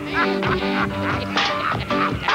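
Lively square-dance tune played on a concertina, with a man's hoarse shouts over it.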